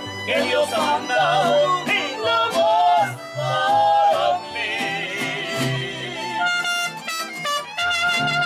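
Mariachi band playing live: a singer's voice over strummed guitars and a plucked bass line, with the instruments taking over on held notes about halfway through.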